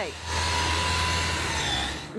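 Power saw running on a ship's deck: a steady whirring hiss with a high whine on top and a low hum beneath. It starts just after the beginning, the whine dips slightly near the end, and it stops just before the end.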